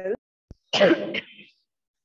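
A woman clears her throat with a short cough about three quarters of a second in, just after the end of a spoken word.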